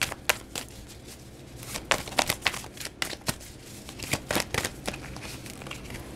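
Tarot cards being handled and laid out: scattered soft flicks and taps of cards, in small clusters about two seconds in and again about four seconds in.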